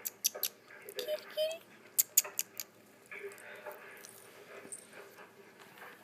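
A kitten mewing briefly, a short rising call about a second in, amid a run of sharp clicks and taps in the first half.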